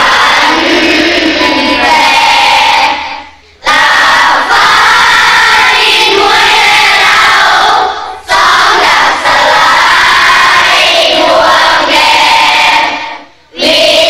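A group of children singing loudly together in unison, in long phrases with three brief breaks between them.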